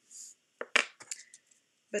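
A brief soft rustle, then a quick series of sharp clicks and taps, one much louder than the rest, as hands handle the hard plastic case of a StazOn ink pad.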